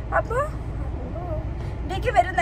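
Steady low rumble of a car's interior, with a short voiced exclamation in the first half-second.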